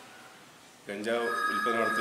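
An electronic phone ring: a steady tone of two high notes sounding together, starting a little after a second in, over a man speaking.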